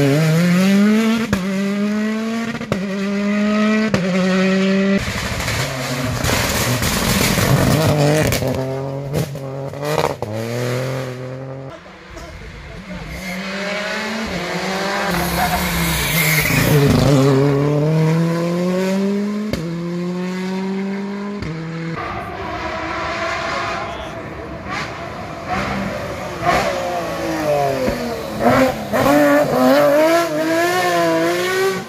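Rally car engines at full throttle, one car after another. The revs climb and drop sharply through gear changes and lifts for hairpin bends. A few sharp pops come near the end.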